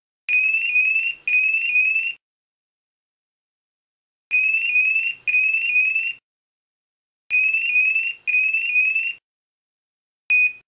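Honeywell IQ Force portable gas detector sounding its alarm: a series of high, rising electronic chirps, about three a second, in three groups of about two seconds with gaps of roughly two seconds between them. A faint low buzz sounds beneath each group.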